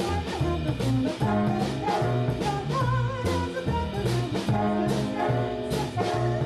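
Swing big band playing, with brass, a walking bass and drums, while a three-woman vocal trio sings in close harmony.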